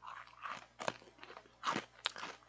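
A crunchy snack being bitten and chewed close to the microphone, a few short crunches.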